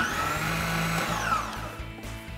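Food processor motor running briefly with the blending jar fitted. Its whine rises as it starts and falls away as it spins down after about a second and a half, showing the blender runs once the processing jar's lid is closed.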